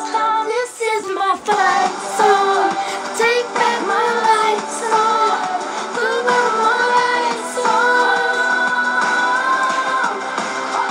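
Pop song with a female lead vocal playing, the singer holding long notes that waver and bend.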